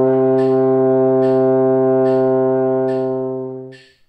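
French horn holding the low final note of a major arpeggio steadily for about four seconds, fading out just before the end. A metronome click sounds about every 0.8 seconds.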